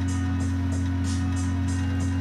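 Background music with a steady beat of about three ticks a second, over a constant low hum.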